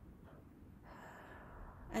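A woman's faint in-breath, about a second long, drawn in just before she speaks again, over quiet room tone.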